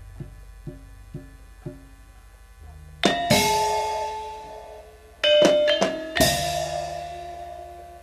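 Javanese gamelan music with percussion: soft, evenly spaced strokes about twice a second, then from about three seconds in, loud struck chords with crashing cymbals and ringing metal tones that fade, hit again twice near the middle.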